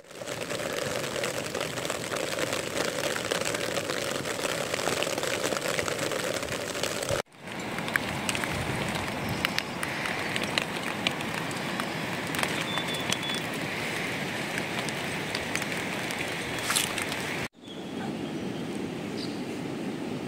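Steady rain falling: a dense, even hiss with scattered drop ticks. It breaks off abruptly twice, about seven seconds in and again near the end, where the recording cuts between takes.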